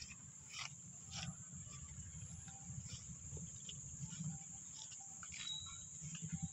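Faint garden ambience: soft rustles and scattered light clicks from walking through plants with a handheld phone, over a steady high-pitched insect drone.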